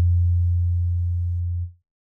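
The last low bass note of the closing music ringing on alone as a single deep, steady tone that slowly fades, then cut off abruptly about one and a half seconds in.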